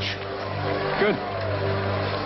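A low, steady drone of several held tones, with a man saying one short word about a second in.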